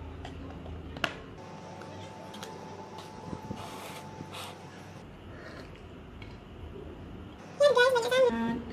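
Quiet clicks and taps of wooden chopsticks against a plastic container and a plate as chicken topping is scraped onto noodles and stirred in, with one sharper click about a second in. A woman's voice starts near the end.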